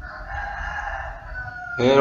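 A rooster crowing once: a single drawn-out, high-pitched call lasting about a second and a half, its last note trailing off slightly lower.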